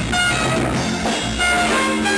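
Live band playing an instrumental jam with electric guitars, trumpet, bass, drums and keyboard, steady and loud throughout.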